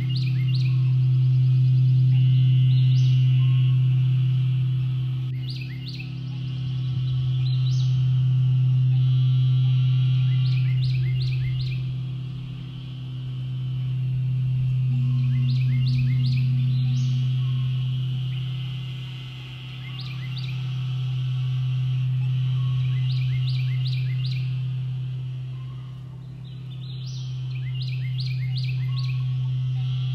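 Crystal singing bowl sounding a steady deep hum that swells and fades about every seven seconds, with birds chirping over it.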